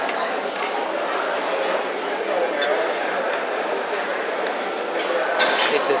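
Steady hubbub of many voices talking in a busy food court, with a few sharp clinks of cutlery and dishes.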